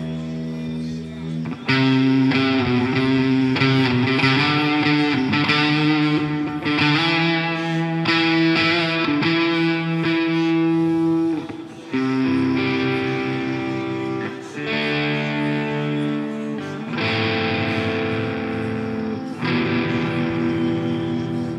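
Live worship band music led by electric guitar, slow held chords changing every few seconds.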